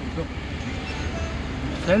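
Low, steady rumble of road traffic and idling vehicles, with faint voices in the background.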